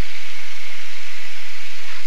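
A steady, loud hiss with faint, indistinct voices under it.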